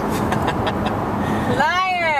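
Steady road and engine noise inside a moving car's cabin. Near the end a voice comes in with one drawn-out sound that rises and then falls in pitch.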